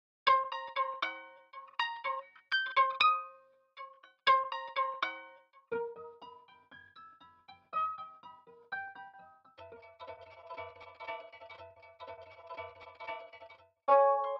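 Sampled electric guitar strings plucked behind the bridge: bright, chiming plucked notes with quick decays, played in short clusters. From about ten seconds in they turn into a denser, fast-repeating shimmer of notes.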